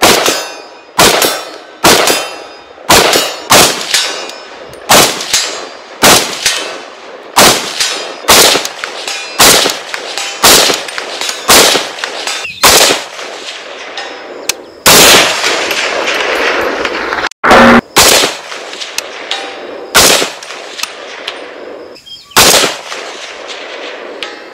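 PSA JAKL in 300 Blackout firing a long string of single shots, roughly one to two a second, each followed by a ringing echo. About fifteen seconds in, a louder stretch runs on for a couple of seconds.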